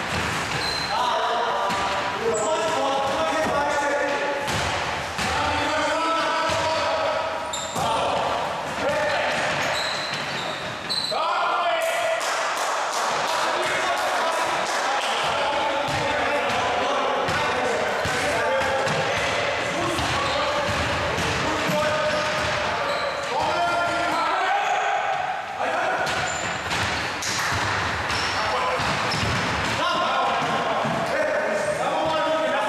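Basketball game in a gym with a wooden floor: the ball bouncing repeatedly on the boards, with players' voices calling out throughout.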